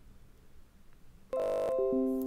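Windows 10 notification chime for the AutoPlay prompt of a newly inserted DVD drive: a short run of clear tones stepping down in pitch, starting about 1.3 s in and ringing on as it fades.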